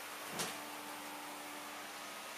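Room tone: a steady low hum over faint hiss, with one brief soft rustle about half a second in.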